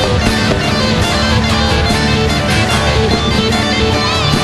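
Live band playing an instrumental passage: drum kit keeping a steady beat under guitars and bass.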